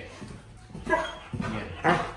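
A large black dog whining and giving short yips: a few brief calls, the loudest near the end.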